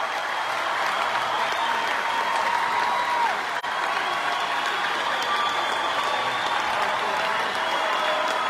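Large concert audience applauding steadily, with a brief dropout about three and a half seconds in.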